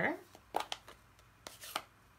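Two pairs of light taps and clicks, about a second apart, as a rubber stamp is inked on an ink pad.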